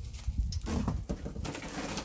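Woven and wooden baskets rustling and scraping as they are lifted and handled, over wind rumbling on the microphone.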